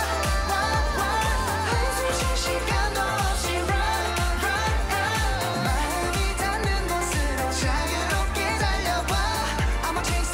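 K-pop dance-pop song with male group vocals singing in unison over a steady, heavy bass-drum beat.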